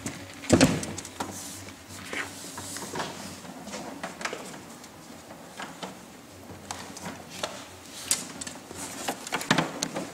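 Handling knocks of the GE Workmaster Series 6's heavy plastic case as it is tipped upright and lifted by its carry handle: one loud thump about half a second in, then scattered clicks and knocks of the case and handle.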